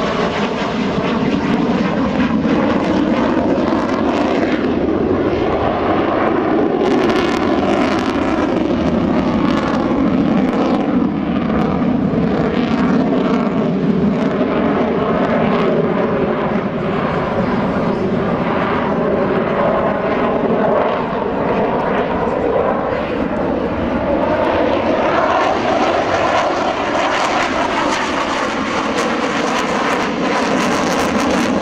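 A Sukhoi Su-30MKM fighter's twin AL-31FP turbofan jet engines during a low aerobatic display, a loud continuous noise that slowly shifts in pitch as the aircraft turns and changes distance.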